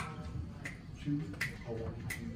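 Finger snaps, three in an even row about three-quarters of a second apart, counting off the tempo for the band to come in, with faint low voices underneath.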